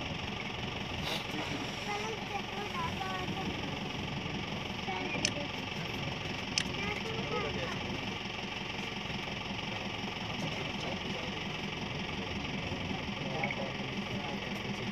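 A safari van's engine idling steadily under low, indistinct chatter of several passengers, with a couple of sharp clicks about five and six and a half seconds in.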